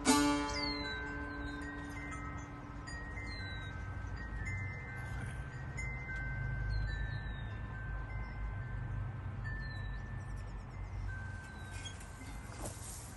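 A last plucked tanbur note rings out and fades over the first couple of seconds. Then a bird sings short downward-sliding whistles every second or two, over overlapping clear held tones and a low rumble.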